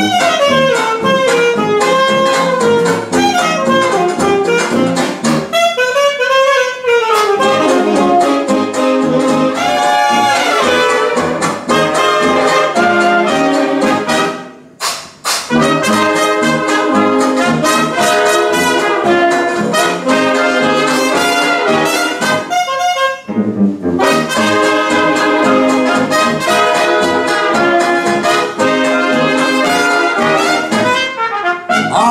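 A 1920s-style traditional jazz band playing an instrumental passage: trumpets, trombone and saxophones over a tuba. The band drops out briefly about halfway through, then comes back in.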